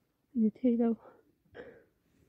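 A woman's voice choked with crying: a few short sobbing words, then a breathy sob about a second and a half in.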